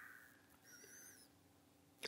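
Near silence between sentences of speech. A faint, high, wavering bird call sounds about a second in.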